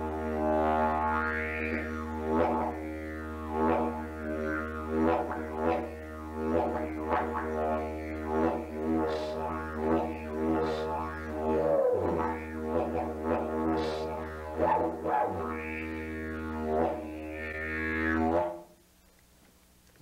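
A didgeridoo made from a termite-hollowed eucalyptus tube, played as one long continuous drone kept going by circular breathing. The tone rises and falls in rhythmic sweeps about once a second, and the bass dips briefly twice in the middle. It stops about a second and a half before the end.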